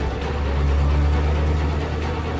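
A car driving past with a low engine rumble that swells about half a second in and eases off near the end, over background music.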